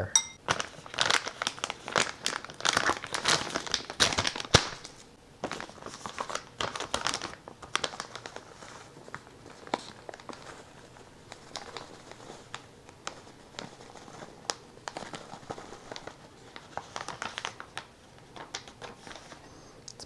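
Crinkling and rustling of a paper bag of almond flour being handled and tipped to pour flour into a glass measuring cup. The rustling is busiest in the first few seconds and turns into lighter, scattered crinkles later.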